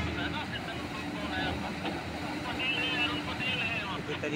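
Heavy mining machinery, a large hydraulic excavator and haul truck, running with a steady engine hum, with people talking in the background.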